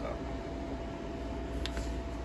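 Steady fan hum with a low rumble and a faint, thin high-pitched whine, with a brief faint click near the end.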